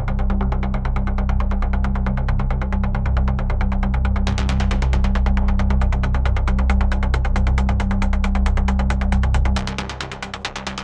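Dark techno track: a fast, even synth pulse over a sustained low bass drone, with the brighter top end opening up about four seconds in. The bass drops out just before the end.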